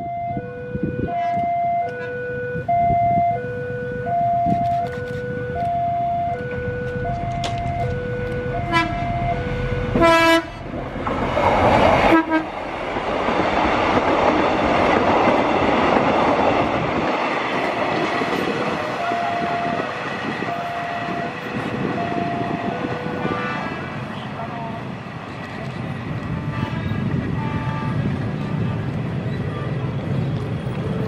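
Railway level-crossing warning alarm sounding as a repeated two-tone ding-dong, then a short train horn toot about ten seconds in. Right after the toot comes the loud rush of the train passing at speed, and its wheel and running noise carries on to the end. The two-tone alarm comes back faintly in the middle.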